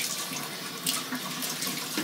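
Kitchen faucet running into the sink while dishes are rinsed under it, with a brief knock about a second in.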